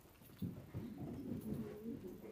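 Faint creaks and shuffling from a congregation getting to its feet from the pews, with short squeaky pitched sounds scattered through.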